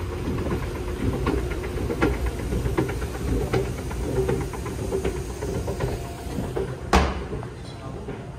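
Escalator running: a steady low rumble and hum with light clicking from the moving steps. A single sharp knock near the end is the loudest sound.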